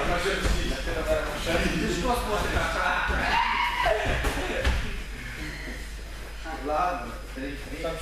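Indistinct voices and chatter echoing in a large hall, with a few dull knocks.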